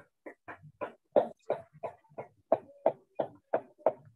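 An animal's short, sharp calls, repeated evenly about three times a second.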